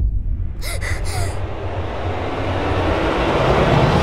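A sudden hit as the scene opens, then a sharp gasp a little over half a second in, followed by a swell of noise that grows steadily louder toward the end.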